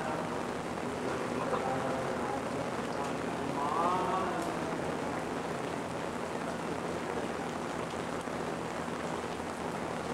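Steady, even hiss-like noise with a faint, indistinct voice surfacing briefly in the first half.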